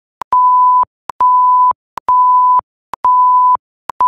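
Countdown beeps: four steady half-second beeps of one high tone, a little under a second apart, each preceded by a short tick, timed with the numbers counting down.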